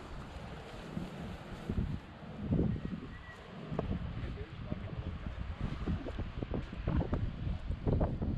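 Wind buffeting the microphone in low, uneven gusts.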